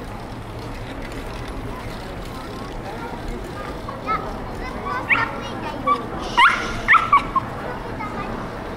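Pedestrian street ambience with a murmur of voices, and a small dog yapping from about four seconds in: a string of short, high-pitched yelps, loudest in a quick cluster near the end.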